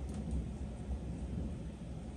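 Low, steady rumble of background noise.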